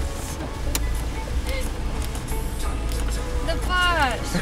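Steady low rumble of a car cabin with the engine idling, with a single sharp click a little under a second in. Near the end a high voice slides down in pitch.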